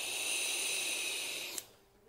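A long drag on a disposable vape: a steady airy hiss that cuts off suddenly about a second and a half in.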